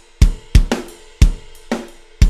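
GetGood Drums Invasion sampled drum kit playing back a pre-made MIDI groove. Kick and snare alternate about twice a second, with cymbals ringing over them.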